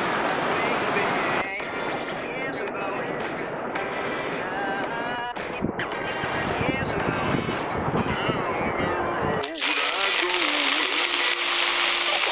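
Steady rushing noise with faint wavering voices or tones over it; about nine and a half seconds in it cuts abruptly to a bright, steady hiss of rain falling on a tarp.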